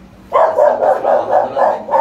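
A dog barking in a quick, loud run, about four barks a second, starting about a third of a second in.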